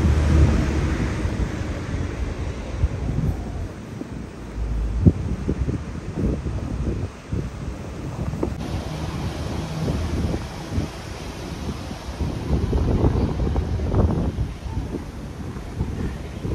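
Wind buffeting the microphone, a loud low rumble, with irregular short knocks and scuffs scattered through it.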